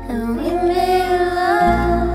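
A song: a woman singing a slow, gentle melody over a sustained instrumental backing, with a deeper bass note coming in near the end.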